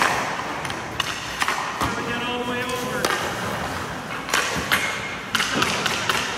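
Hockey pucks and sticks clacking and thudding on the ice, with about eight or nine sharp knocks scattered through the few seconds and skate blades scraping the ice.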